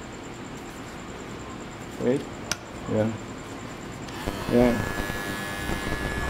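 Electric pet hair clipper switched on about four seconds in, its small motor and blade then running with a steady high-pitched whine. A sharp click comes a little before the motor starts.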